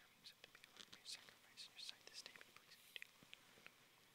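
Near silence with faint whispered prayer: a priest bowed at the altar, speaking the quiet offertory prayer under his breath, heard as a few soft hisses of whispered words.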